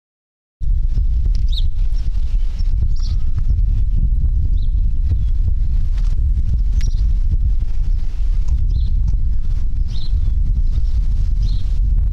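Wind buffeting a camera microphone: a loud, low, unsteady rumble with no engine note. It cuts in about half a second in and stops abruptly at the end. A few faint short high chirps sit above it.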